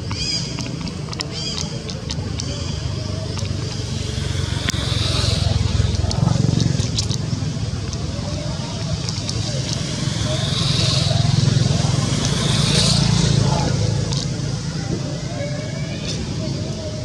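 Outdoor background of a low rumble from passing vehicles, swelling twice, under people's voices. There are short high chirps in the first two seconds.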